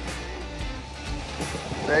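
Background music with steady, stepping low notes over a continuous low rumble.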